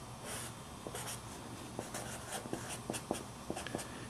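Felt-tip marker writing on paper: a few short, faint scratchy strokes with light ticks as an arrow and letters are drawn.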